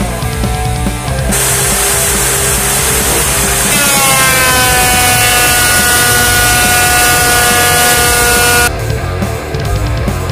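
Rock music with a benchtop thickness planer cutting a board. The planer's loud, hissing noise cuts in about a second in and stops abruptly near the end. Midway its motor whine drops in pitch and then holds steady as the board takes the load.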